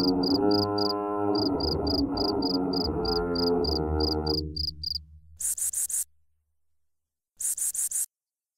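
Electronic music: a sustained pitched drone with a low rumble beneath it, over steady cricket-like chirps at about four a second. The drone fades out about halfway through. Then come two short, rapid bursts of chirping with a moment of silence between them, the second near the end.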